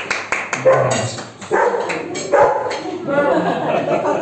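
People's voices in a room, with a few sharp knocks near the start and a short, yelping call about three seconds in.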